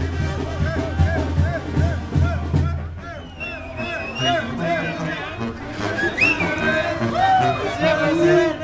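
A Mexican street brass band playing, with a sousaphone bass line and a steady drum beat that drop out about three seconds in while the higher melody carries on. Crowd voices and shouts mix in over the music.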